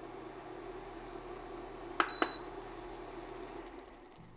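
Induction cooktop humming steadily under a saucepan of heating jelly liquid. About halfway through come two clicks and a short high beep as the hob is switched off, and the hum dies away near the end.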